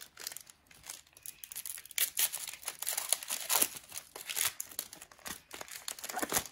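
Plastic wrapper of a hockey-card pack crinkling and rustling in irregular bursts as it is handled and opened, sparse at first and busier from about two seconds in.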